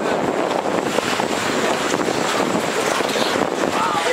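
Steady rushing noise aboard a small boat moving through a sea cave: the boat's running and the water washing around it blend into an even hiss with no clear engine note.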